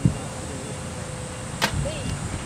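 Outdoor background with a steady low rumble of wind on the microphone, and one sharp click about one and a half seconds in.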